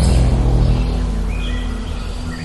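Low, sustained bass drone of a film's opening-title sound effect, slowly fading, with a few faint high tones near the middle.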